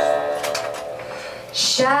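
Electric guitar chord ringing out and slowly fading, with a voice starting to sing near the end.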